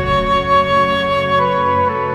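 Background score music: a slow melody of held notes that steps down in pitch about one and a half seconds in.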